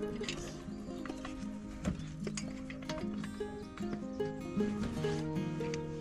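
Background music: a melody of held notes moving in steps over a low bass line, with a few short sharp clicks about two seconds in.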